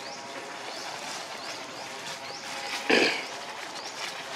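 A macaque gives one short, loud squeal about three seconds in, over the rustle of monkeys moving through dry leaves. A short rising chirp repeats faintly in the background.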